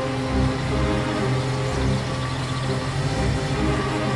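A Maserati's engine running at low speed as the car pulls in and stops, under background music with steady sustained tones and a pulsing beat.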